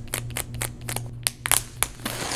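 Sealing tear strip being peeled off the side of a cardboard MacBook Pro box by hand: a run of irregular sharp crackles and ticks, loudest about one and a half seconds in, over a steady low hum.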